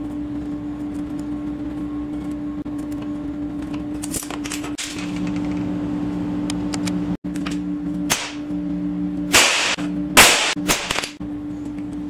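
Clacks and short, loud clattering scrapes of steel parts being handled on a steel workbench, the loudest ones bunched in the last few seconds, over a steady workshop hum.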